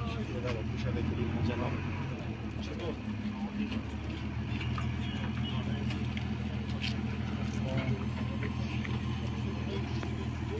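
Fire truck engine idling steadily, with indistinct voices in the background.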